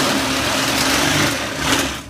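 Cordless drill spinning a plunger head in a clogged toilet bowl, the motor running steadily with the water churning around it; it stops near the end.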